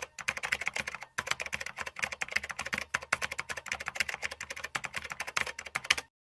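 Typing sound effect: rapid key clicks, about ten a second, with a short pause about a second in, cutting off abruptly at the end. It is timed to on-screen text being typed out letter by letter.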